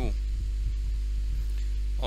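Steady low electrical hum, mains hum in the recording, with faint higher steady tones above it; a spoken word ends just at the start.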